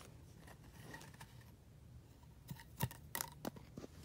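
Silicone dimple fidget toy being pressed: a quiet start, then a handful of faint, short clicks in the second half.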